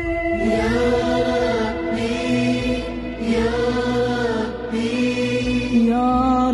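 Arabic devotional chant (a sung supplication) as closing music: a vocal line drawn out in four long phrases with short breaths between, over a steady low bed.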